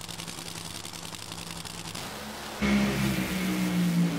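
Two supercharged nitromethane Funny Car V8s idling at the starting line with a steady hum. About two and a half seconds in, both launch at full throttle: a sudden jump to a loud, rough engine blare whose pitch sinks slowly.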